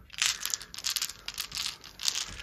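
A handful of plastic six-sided dice rolled into a felt-lined dice tray, clattering against each other and the tray in a quick run of clicks.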